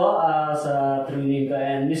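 A man's voice in long, drawn-out sing-song tones, half chanted and half spoken, close to the microphone.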